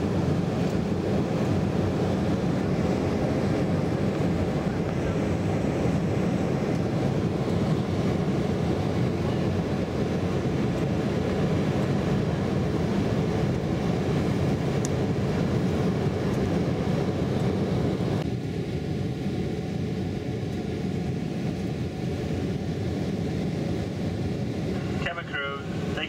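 Airliner cabin noise heard from a window seat beside the wing: the steady rumble of the turbofan engines and airflow during the descent. About eighteen seconds in it turns slightly quieter and duller, and a voice starts near the end.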